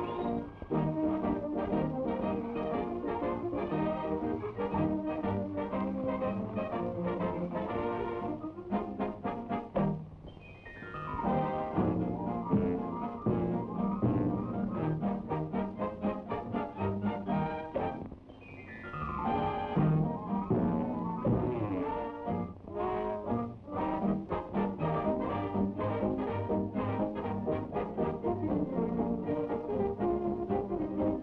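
Brass-led orchestral cartoon score, trombone to the fore, playing a lively tune. Twice the music drops away briefly and comes back with a quick downward sweep.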